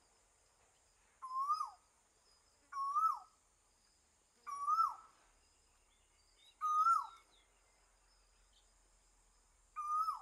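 A bird calling about five times, every couple of seconds, each call a short note that rises and then drops sharply, over a steady high hiss.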